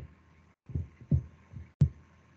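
Several short, low thumps, about five in two seconds, the last one with a sharper click, picked up by a meeting microphone that gates to silence between them.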